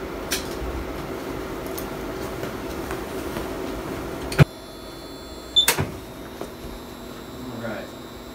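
Diagnostic X-ray machine taking an exposure: a steady hum that stops with a sharp click about halfway through, then a short high beep with a click about a second later.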